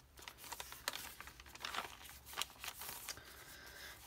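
Pages of a handmade journal of coffee-dyed paper and cardstock being turned and handled: soft paper rustling with scattered light crinkles and taps throughout.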